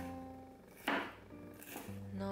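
A chef's knife slicing through a bell pepper onto a wooden cutting board: one crisp cut about a second in and a lighter one near the end, over soft guitar music.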